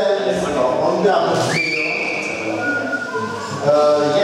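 Children's voices chattering in a large, echoing gym. About a second and a half in, a brief high tone rises sharply and holds for under a second.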